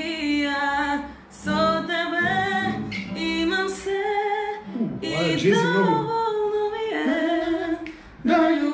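A woman singing a song, in phrases with short breaks about a second in and again near the middle.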